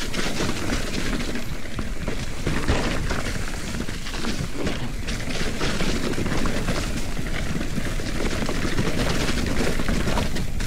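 Mountain bike rattling down a rocky, leaf-covered trail: a dense, continuous clatter of quick knocks and clicks from the bike going over rock and roots, over a steady low rush of wind on the microphone.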